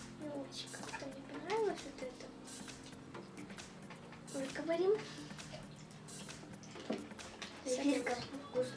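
Children chewing gummy candy, with wet mouth clicks and a couple of short voiced murmurs, over soft steady background music.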